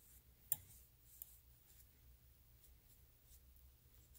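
Near silence: quiet room tone with two faint light clicks about half a second and a second in, from the leak-detector applicator being handled against the brass fittings.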